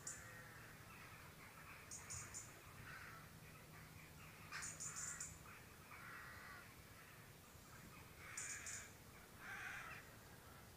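Near silence with faint outdoor bird calls: short high chattering calls in groups of three or four, repeating about every three seconds, among softer lower calls.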